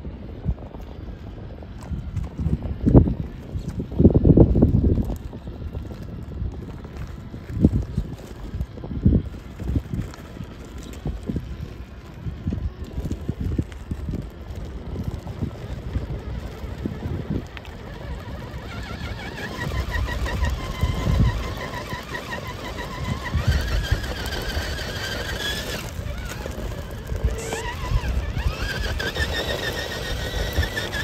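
Traxxas TRX-4 scale RC crawler working over rocks and gravel: irregular crunching and clattering from the tyres and chassis, with low thumps in the first half. From about two-thirds of the way in, the brushless motor gives a wavering, high whine as it climbs.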